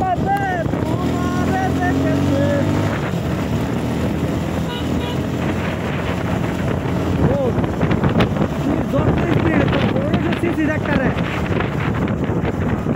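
Wind rushing over the microphone of a moving motorcycle, with the engine's steady hum underneath.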